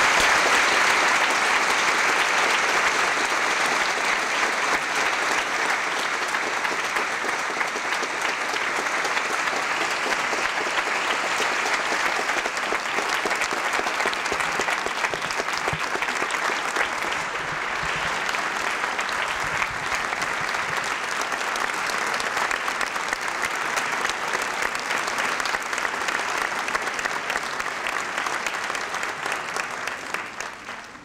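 A large audience applauding at length, loudest at first and then holding steady.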